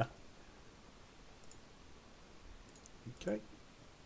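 A few faint clicks from a computer mouse or keyboard in the middle, over quiet room tone, followed by a short spoken 'okay' near the end.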